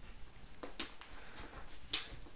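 Broom handle tapping a tennis ball along a rubber mat floor: a few light, sharp taps, the clearest just under a second in and near the end.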